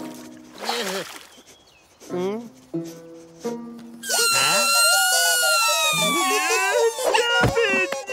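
Cartoon horn-mouthed birds (hullabaloonies) honking all together from about halfway through: a loud, many-voiced racket whose pitch slowly falls. Before it come short cartoon sound effects and music.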